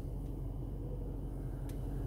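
Steady low background hum inside a stationary car's cabin, with one faint click about a second and a half in.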